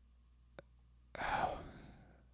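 A man sighs, one breathy exhale about a second in. It is preceded by a single short mouse click.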